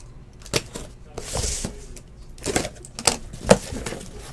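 Small cardboard trading-card boxes being handled and opened on a table: scattered clicks and taps, with a short rustle about a second and a half in.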